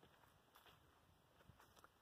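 Near silence, with only a few faint ticks.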